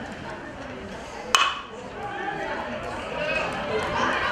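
Metal baseball bat striking a pitched ball: one sharp ping with a short ring about a second and a half in, over the chatter of spectators.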